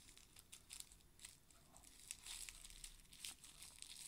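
Near silence with faint, scattered crackles and rustles.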